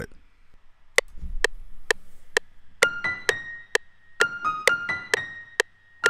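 FL Studio's metronome counts in with four evenly spaced clicks, about two a second. Then a sampled piano sound played from a MIDI keyboard comes in with short notes alternating between a few high pitches, the metronome clicks still keeping time under it.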